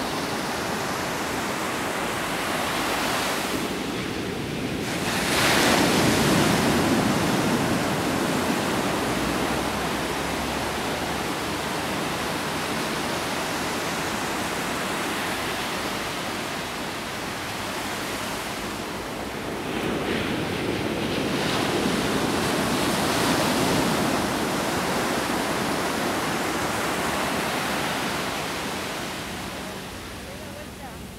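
Ocean surf washing onto the shore in a steady rush. Two waves break louder, one about five seconds in and another around twenty seconds in.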